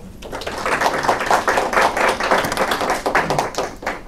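A small audience applauding: a dense patter of hand claps that fades out near the end.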